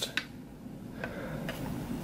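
Faint handling of the Implantest's metal probe and plastic handpiece, with a single short click just after the start and then low, even rustling.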